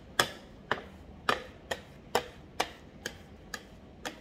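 Metal scraper and spatula clicking and scraping against the slab, about two strokes a second, as melted chocolate is worked back and forth on the surface during tempering to bring the cocoa butter to its crystal stage.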